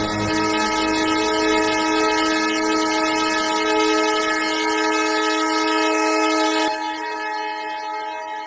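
Madwewe handmade six-oscillator analog drone synth holding a dense chord of steady, overlapping tones, its lowest tones dropping out just after the start. About seven seconds in the upper tones cut off suddenly and the sound falls away and begins to fade.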